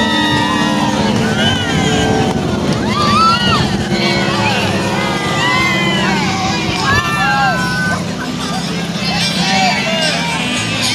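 Parade crowd voices, with many people talking and calling out at once, over the steady low running of a slow-moving vehicle engine.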